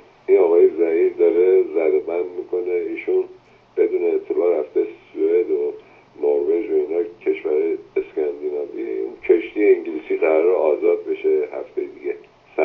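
Speech only: a caller's voice talking continuously over a telephone line, thin and narrow in tone, with a faint steady hum underneath.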